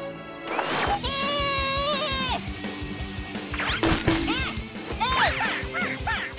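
Cartoon soundtrack music with a long held note about a second in and a sharp hit about four seconds in. Near the end comes a run of quick chirps that rise and fall.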